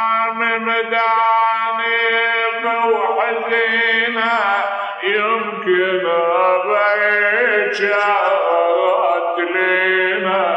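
A man's voice chanting a mournful elegy in long held notes with wavering ornaments, pausing briefly about three and five seconds in. It is the melodic lament recitation of a Shia Muharram majlis, mourning Husayn.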